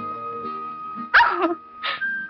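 Soft background film music with a long held high note, broken about a second in by two short, loud cries, the first falling in pitch.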